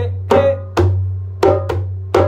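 A hand drum struck with bare hands, playing a repeating groove: four sharp strokes in uneven rhythm, each ringing with a short pitched tone as it decays.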